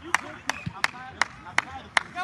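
One person clapping in a steady rhythm, sharp claps about three a second, over faint distant voices.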